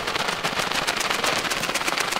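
A flock of pigeons taking off, their wings clapping and flapping in a dense, irregular flurry.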